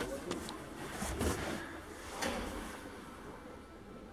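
Faint rustling and light knocks of someone shifting about in a car's back seat, hands and clothing brushing the upholstery and plastic trim, with brief louder bursts about a second in and about two seconds in.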